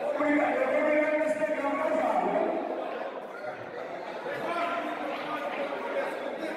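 Indistinct voices of people talking among a crowd of onlookers, echoing in a large indoor hall.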